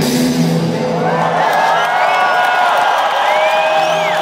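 A live rock band's playing drops away about a second in, leaving an arena crowd cheering, with whoops and whistles gliding up and down.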